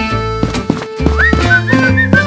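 Upbeat background music with a steady, knocking beat under plucked notes. A high, wavering, whistle-like melody comes in about a second in.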